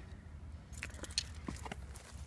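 A bunch of keys on a lanyard jangling as it is carried, a few light scattered clinks.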